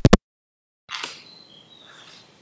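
A rapid burst of about four sharp, loud clicks, then about a second in a faint hiss carrying thin high chirping tones that fades away.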